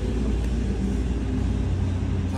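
A steady low rumble with a faint hum in it.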